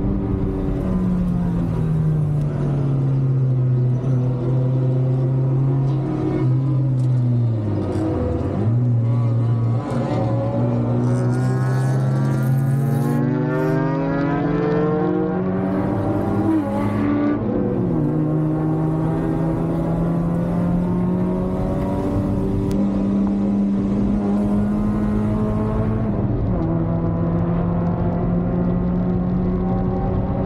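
Racing Mazda Miata's four-cylinder engine heard from inside the cabin while lapping the track: the revs fall off about a second in, dip sharply near eight seconds, climb steadily for about seven seconds, then drop and hold high to the end with another small drop near the end.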